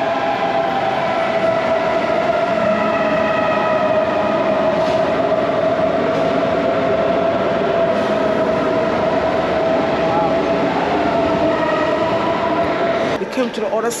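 Munich S-Bahn electric train running into an underground station platform: a steady rumble with a whine that drifts slightly lower, then dies down about thirteen seconds in.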